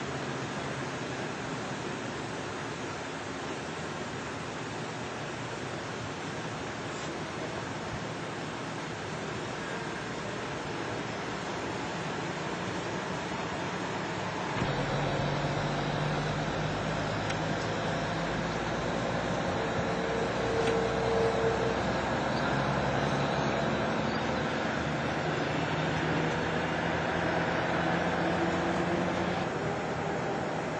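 Steady outdoor noise hiss, then about halfway a vehicle engine running at a steady idle comes in suddenly louder, a low even hum that holds to the end.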